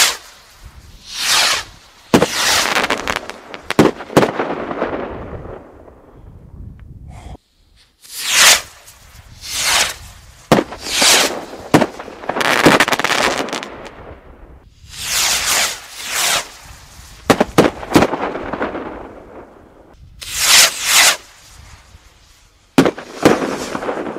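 Fireworks rockets from a Nico Rocket Rallye assortment launched one after another, each rising with a rushing whoosh and bursting with a sharp bang that echoes away. Launches and bangs overlap at times and come every second or two.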